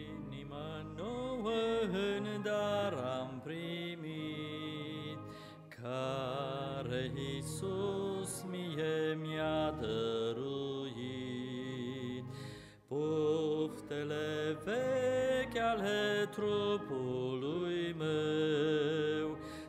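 A church congregation singing a slow Romanian hymn together in long sung phrases, with short breaths between phrases about six and thirteen seconds in.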